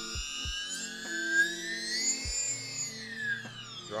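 Electric paramotor's outrunner motor spinning with no propeller fitted: a high whine that rises in pitch to a peak about halfway through, then falls as the throttle comes back. Background music with a soft beat runs underneath.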